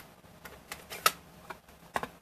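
A plastic ink pad case and a wood-mounted rubber stamp are handled on a desk, giving about five sharp clicks and taps in two seconds. The loudest comes about a second in.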